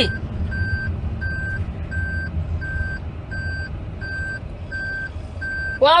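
A single-pitched electronic beep repeating at an even pace, about three beeps every two seconds, over a steady low rumble.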